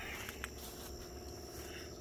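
Faint steady hum with a few low tones, setting in about half a second in after a small click, from a semi truck's APU (auxiliary power unit) that is about to start.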